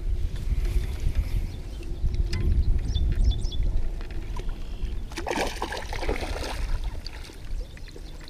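Water sloshing and lapping around a landing-net camera held partly under the surface, heard as a muffled low rumble. There is a brief burst of splashing about five to six seconds in.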